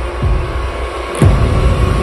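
Horror trailer sound design: a low rumbling drone with a sudden loud hit a little over a second in.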